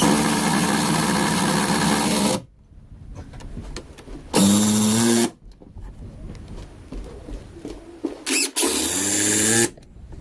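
Cordless drill motor running in three bursts, a long one of about two seconds and then two short ones of about a second each, driving screws into the wooden framing around the attic ladder opening.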